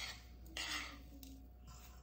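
A metal spoon faintly scraping and clinking against a ceramic bowl as it stirs a damp, crumbly cauliflower mixture.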